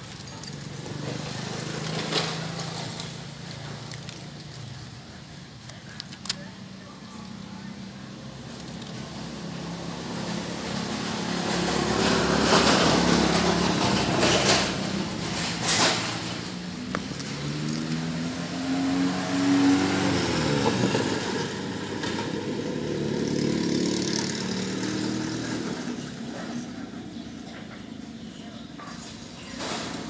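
A vehicle engine nearby, swelling and falling in pitch and loudness and loudest in the middle, with background voices and a few sharp clicks.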